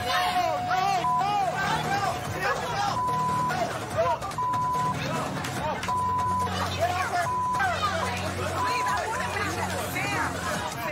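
Several people shouting over each other in a heated argument, with censor bleeps laid over the swearing: one lower bleep lasting about two seconds at the start, then a string of short higher bleeps. Music plays underneath.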